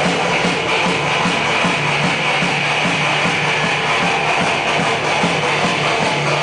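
Rock band playing live in a small room: distorted electric guitars and bass, with a steady low pulse about three times a second.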